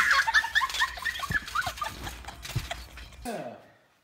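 High-pitched laughter in quick repeated bursts, dying away over the first two or three seconds, with a couple of dull thumps.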